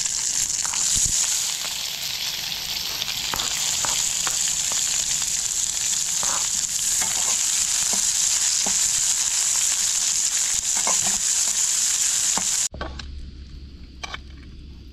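Sliced onions and green chilli sizzling loudly in hot oil in a metal kadai, stirred with a metal spatula that clicks and scrapes against the pan. The sizzle stops abruptly near the end.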